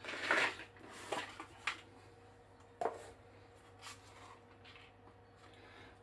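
A cardboard box of Hornady bullets being handled and opened: a short scrape and rustle of cardboard near the start, then a few light clicks and knocks as the box and bullets are set down.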